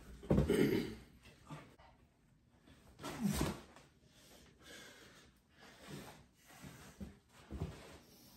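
Scuffle ending with a body slammed down onto a carpeted floor: a loud thud near the start and another sharp thump about three seconds in, then a few quieter short breathing sounds.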